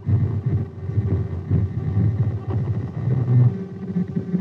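Doppler audio return of a moving vehicle on a highway, heard from the AN/TPS-25 ground surveillance radar's loudspeaker as a low, rough, uneven tone.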